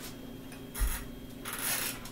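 A person shifting position on a carpeted floor: a dull thump just under a second in, then a short rustling scuff of clothing and body.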